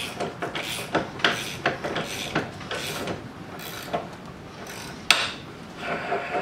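Hand wrenches tightening a lock nut onto the bolt of a mower-deck gauge wheel clamped in a bench vise: a run of small irregular metal clicks and scrapes, with one sharp click about five seconds in.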